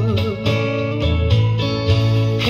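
Steel-string acoustic guitar strummed, with a harmonica in a neck rack playing steady held notes over it.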